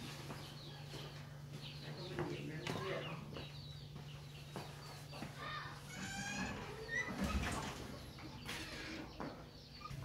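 Faint chickens clucking in the background, with some distant voices and a steady low hum underneath.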